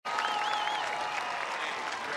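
An audience applauding, a dense steady clapping that starts abruptly. In the first second a high, wavering whistle rises above it.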